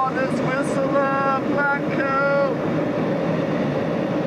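Steady travel rumble from a moving vehicle. Over it, a high-pitched voice calls or laughs several times in the first two and a half seconds and then stops.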